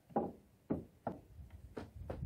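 A wooden deck board being laid down and knocked into place on a wooden stair landing: about five sharp wood-on-wood knocks at uneven intervals, the first ones loudest.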